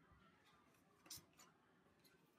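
Near silence: room tone, with two faint, short rustles a little after a second in.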